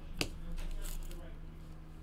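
Trading cards in plastic sleeves being handled on a tabletop: one sharp click as a card is set down just after the start, then soft scratchy rustling of the cards, over a low steady hum.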